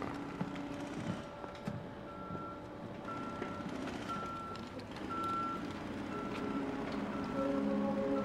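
A single-pitched electronic beep repeating steadily about once a second, like a vehicle's reversing alarm, with soft music tones swelling in near the end.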